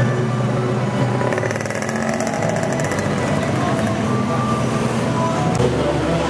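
Street parade din: a steady low engine hum from the passing motor floats, mixed with music and crowd voices, with a brief rapid rattle near the middle.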